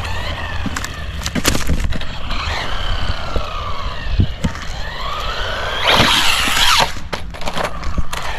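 A FUUY Sweep Pro 1/16 brushless RC car running on asphalt: its motor whine glides up and down in pitch as it speeds up and slows, with tyre noise and scattered knocks. About six seconds in it accelerates hard with a loud rising whine and tyre rush, then there is a clatter of knocks as it comes down off the jump on its wheels.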